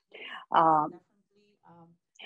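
Speech only: a voice talking in short phrases with brief pauses between them.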